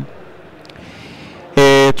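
A man's amplified voice through a PA: a silent gap with only faint hall background, then a held, level-pitched "eh" starting about one and a half seconds in, leading into speech.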